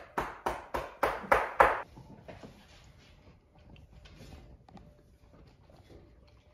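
A Great Dane eating noisily: a quick run of about seven wet mouth sounds, three or four a second and getting louder, in the first two seconds, then softer, scattered ones.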